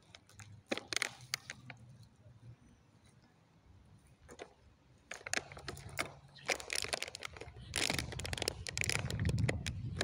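A dog gnawing on an empty plastic water bottle: sharp crackles and crunches of the plastic. They are sparse at first, pause for a couple of seconds, then come thick and fast in the second half, with wind rumbling on the microphone toward the end.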